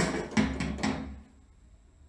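Sampled acoustic rock drum kit from AIR Ignite software playing about four quick drum hits with deep low thuds, stopping after about a second.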